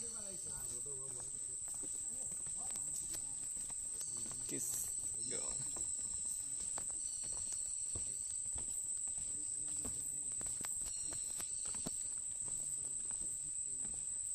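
Footsteps on a wooden plank boardwalk, irregular knocks on the hollow boards, over a steady high-pitched insect drone from the mangrove forest.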